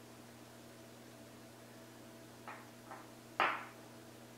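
Small plastic drone parts being handled and fitted together by hand: two soft clicks a little past the middle, then a louder short sound near the end, over a faint steady room hum.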